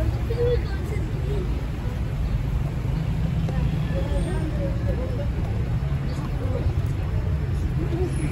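City street ambience: a steady low rumble of road traffic, with faint voices of passers-by now and then.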